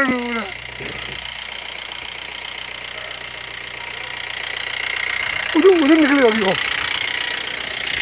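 Vehicle engine idling steadily, with a voice calling out briefly at the start and again about five and a half seconds in.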